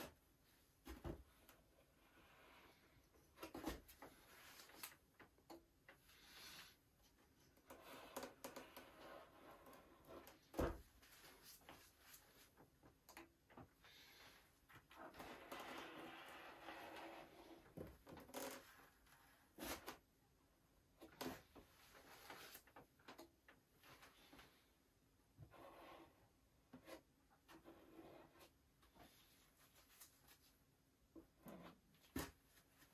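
Near silence with faint handling sounds: nitrile-gloved fingers and a paper towel rubbing over a balsa wing, with a few soft knocks, the loudest about ten seconds in.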